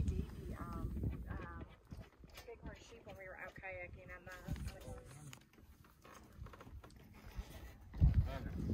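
Faint, indistinct voices of people talking, with a low rumble underneath.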